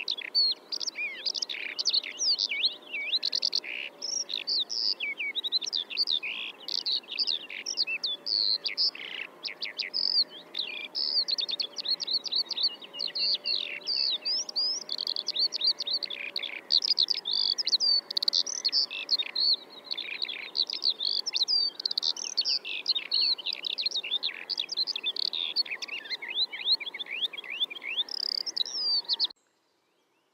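Many small birds chirping and twittering together in a dense, unbroken chorus of short high calls, which stops suddenly near the end.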